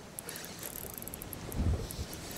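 Spinning reel being cranked to bring in a hooked fish, its gearing giving a fine, rapid clicking. Under it is a low rumble of wind and water, with a brief low thump near the end.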